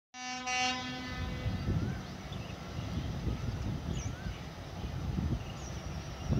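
Diesel locomotive horn sounding one short blast at the very start, its note dying away within about a second, followed by the low, uneven rumble of the approaching train.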